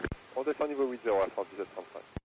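Air traffic control radio transmission: a voice heard over aviation VHF radio on the approach frequency, with a sharp push-to-talk click as it begins.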